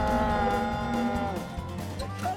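A man's long drawn-out yell, held on one pitch for over a second and then sliding down, with music and a low rumble underneath.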